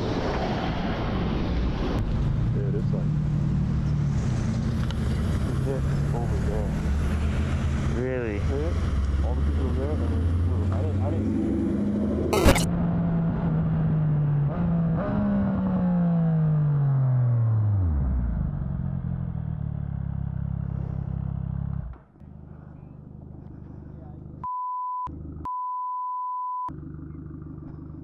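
Motorcycle engine running under a rider, its note falling steadily over about three seconds as the bike slows, then running lower and quieter. Near the end comes a steady high censor bleep, broken once by a short gap.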